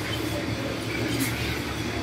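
Steady background noise with a constant low hum, in a pause between spoken sentences.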